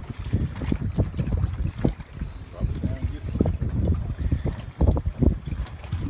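Wind buffeting the microphone in uneven gusts, a low rumble that rises and falls.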